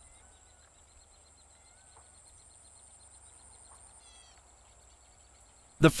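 Quiet open-field ambience: a steady faint high-pitched hum with a low rumble beneath, and a few short bird chirps about four seconds in. A narrating voice starts right at the end.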